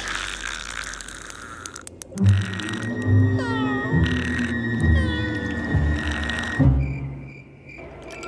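Cartoon soundtrack: music with meow-like calls that fall in pitch, twice, a few seconds in.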